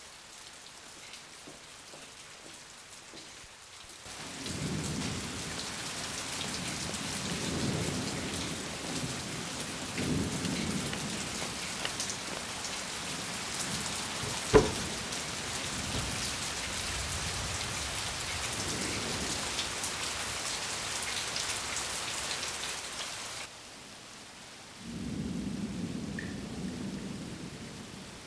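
Heavy rain falling with low rolls of thunder and one sharp crack about halfway through. The rain starts about four seconds in and cuts off suddenly near the end, followed by one more low rumble.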